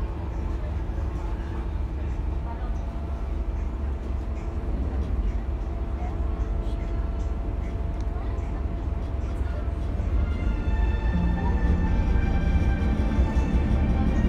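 Steady low rumble of a passenger ferry's engines, with music coming in about ten seconds in.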